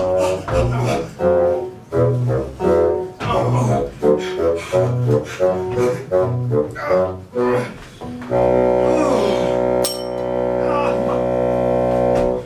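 Music with a bouncy, evenly paced bass line under pitched notes, settling about eight seconds in into one long held chord. A single sharp click sounds near ten seconds in.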